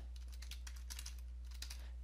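Faint computer keyboard keystrokes, a quick run of key clicks as a word is typed, over a steady low hum.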